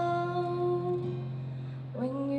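A woman's voice holding one long sung note over acoustic guitar, the note fading away over the second half, with a new phrase starting right at the end.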